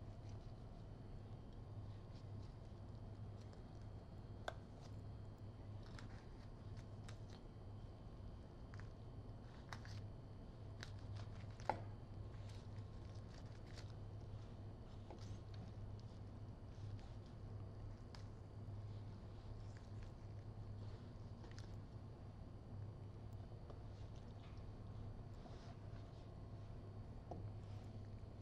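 Faint sounds of a knife cutting roast turkey breast meat away from the rib cage: scattered small crackles and ticks, with a sharper click about four seconds in and another near twelve seconds, over a steady low hum.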